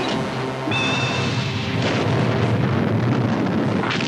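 Cartoon sound effect of rockets launching from a spacecraft's missile pods: a rushing rumble that swells about a second in, with a brief high whistling tone, laid over background music.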